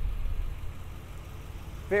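6.6-litre Duramax diesel V8 idling: a low, steady rumble. A man's voice starts right at the end.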